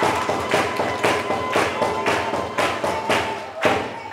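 A steady beat of sharp hits, about two a second, over a faint held tone, heard as music.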